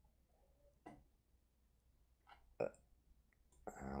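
Mostly near silence in a small room, broken by a single faint click about a second in and a brief hesitant 'uh' near the end.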